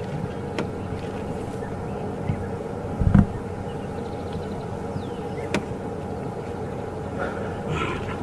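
A game-drive vehicle's engine idling steadily, with a low thump about three seconds in and a few faint clicks.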